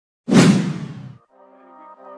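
A loud whoosh sound effect starts suddenly about a quarter second in and fades away over about a second. Soft background music follows and slowly grows louder.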